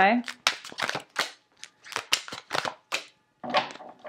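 Tarot cards being handled and laid out on a table: a quick series of sharp snaps and flicks as cards are drawn from the deck and put down. A brief murmured voice comes in near the end.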